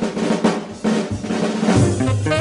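A jazz drum kit playing a short break of snare and bass-drum strokes in a 1958 small-group jazz recording, with the other instruments mostly dropping out. The band comes back in near the end.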